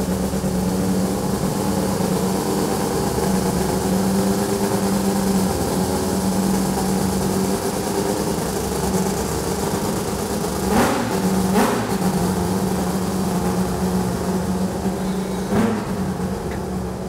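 A racing car's quad-rotor rotary engine idling steadily, with two short sharp bursts about eleven seconds in.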